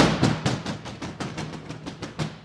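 A quick run of heavy knocks, like fists pounding on a wooden door, starting suddenly and loud, then fading over about two seconds.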